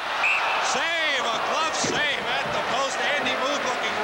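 A commentator's voice calling the play, over a steady hiss of arena noise.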